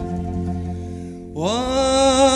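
An Arabic ensemble's instrumental phrase fading away over a low sustained note; about 1.3 seconds in, a male singer's voice enters, sliding upward into a long held note with vibrato, in maqam Shawq Afza.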